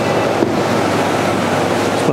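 Steady, loud rushing noise with no clear pitch, as of running machinery or fans.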